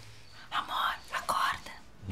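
A woman whispering a few quick, breathy words for about a second, starting about half a second in.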